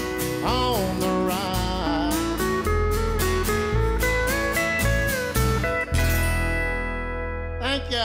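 Country band playing an instrumental outro: pedal steel guitar slides and bends over upright bass and strummed acoustic guitars, settling on a held chord that rings from about six seconds in, with one more steel slide near the end.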